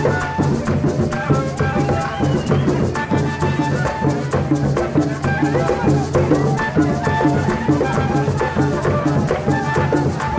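Colombian gaita music played live: a gaita (cactus duct flute) plays a melody of held and sliding notes over hand drums and a maraca shaken in a steady rhythm.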